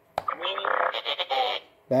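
Hasbro Force Link gauntlet playing BB-9E's electronic droid sound through its small speaker: a buzzy, warbling blurt lasting about a second and a half that sounds like a fart.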